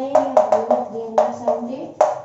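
Chalk tapping and scraping on a chalkboard in quick strokes as numbers and a fraction are written, with a drawn-out hum of the writer's voice held underneath.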